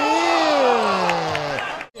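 A sports commentator's long, drawn-out exclamation, its pitch rising and then sinking, over arena crowd noise; it cuts off abruptly near the end.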